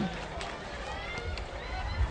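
Football stadium field ambience: faint distant voices from players and the crowd over a steady low rumble.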